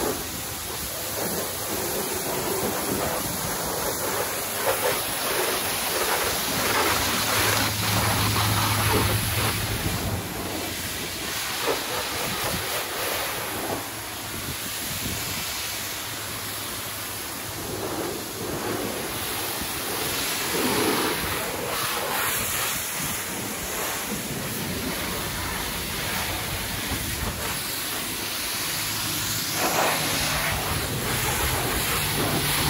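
High-pressure car-wash wand spraying water onto a van's body: a steady rush of spray that rises and falls in level as the jet moves.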